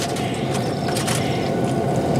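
Aluminium foil crinkling and rustling as a foil tent is pulled back off a foil pan, a run of irregular crackles over a steady rustle.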